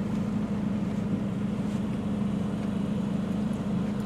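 Steady low hum of a running car heard from inside its cabin, an even drone with no other events.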